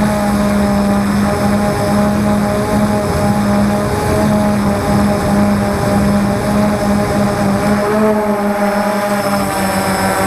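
Drone's motors and propellers humming steadily in flight, heard close from the onboard camera, with a slight wavering in pitch near the end.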